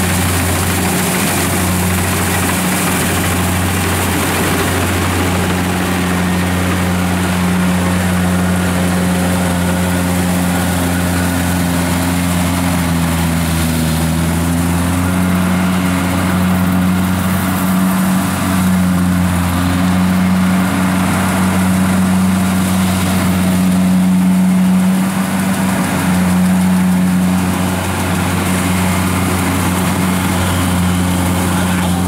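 Kubota DC-70 combine harvester's diesel engine running steadily under load as it cuts and threshes rice; its note sags briefly about halfway through, then recovers.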